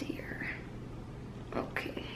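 A woman's quiet, whispered voice: a breathy sound in the first half-second, then short soft bursts of speech from about one and a half seconds in.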